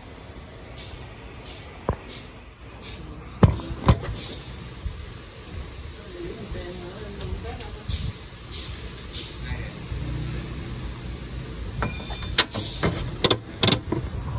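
Two sharp knocks and a cluster of clicks near the end, typical of a phone camera being handled, over a low steady rumble. Short high hisses recur about twice a second in two runs.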